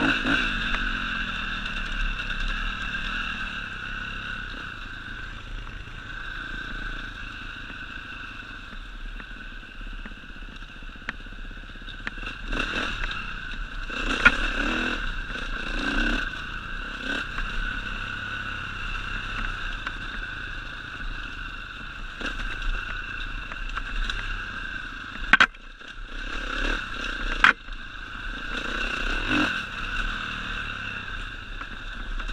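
Enduro motorcycle engine running at a steady pitch while riding a rough, stony trail, with scraping and clattering from the bike over rocks. A few sharp knocks stand out near the end.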